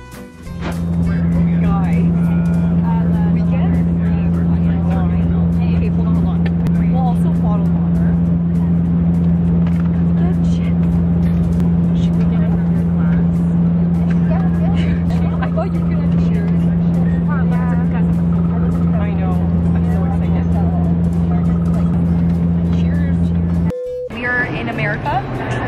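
Steady, loud low drone of an airliner's engines heard from inside the cabin in flight, with voices talking over it. It cuts off suddenly near the end.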